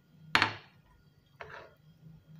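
A metal spoon knocking once, sharply, against a metal pan as a spoonful of margarine goes into the pudding mixture, followed about a second later by a softer scrape of the spoon in the pan.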